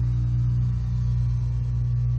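A steady low hum and rumble, even in level throughout.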